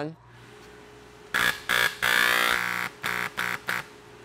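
Electric spot cleaning gun for screen printing, triggered in about six short spurts with one longer one about halfway. Each spurt is the pump's buzz over a hiss of spray. The freshly lubricated and reassembled gun is working fine.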